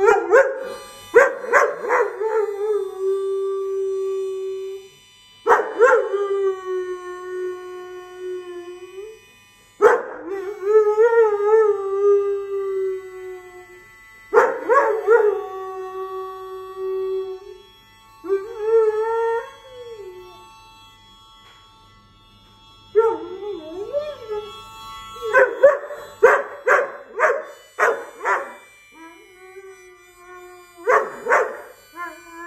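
A dog howling along with music in a series of long drawn-out notes of two to four seconds each, one of them wavering, then a run of short, quick howls over the last few seconds.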